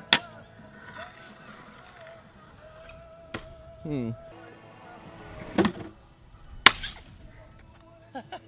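Stunt scooter wheels and deck clacking on concrete: a sharp clack just after the start, a lighter one a little over three seconds in, then two loud clacks about a second apart, the second the loudest.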